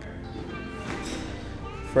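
Soft background music.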